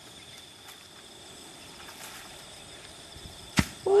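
Steady high chirring of insects, then a single sharp thud near the end as a coconut twisted off the palm hits the ground.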